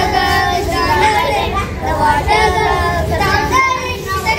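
A group of young children singing and chanting a phonics alphabet song together.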